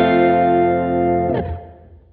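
Hollow-body archtop electric guitars, run through effects, strike and hold the final chord of a fast instrumental piece. The chord rings for about a second and a half, then dies away quickly.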